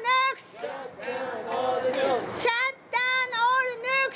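A small group of people singing a song together in unison, in held, melodic phrases of about three seconds with a short break between them.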